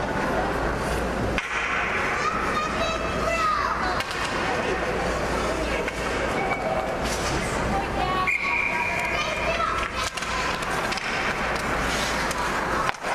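Ice hockey rink sound during a youth game: players' and spectators' voices calling out in the arena, with skates scraping on the ice as play restarts.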